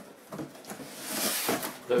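Cardboard rustling and scraping, with a few light knocks, as a large corrugated shipping box is handled and its flaps are worked open. The rustle swells to its loudest around the middle.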